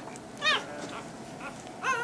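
Young Rottweiler puppy crying: two short, high-pitched cries that rise and fall in pitch, one about half a second in and one near the end.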